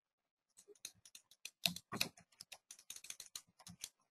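Computer keyboard being typed on: quick, irregular key clicks that start about half a second in.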